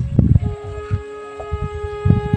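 Background music on a flute-like wind instrument holding one long note, with low thuds loudest in the first half second.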